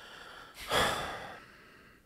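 A man's audible sigh close to a studio microphone: a faint breath in, then a louder breath out a little over half a second in, fading away over most of a second.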